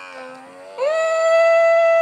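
Electric lip-plumping suction device held to the lips, its pump running with a steady whine. The whine jumps to a higher, louder pitch just under a second in and holds flat.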